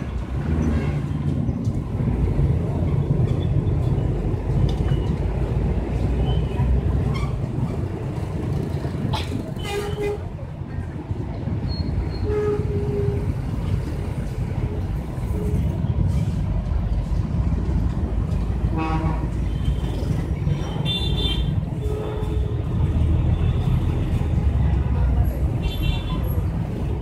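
Steady low rumble of street traffic and engines, with a few short horn toots and brief snatches of voices.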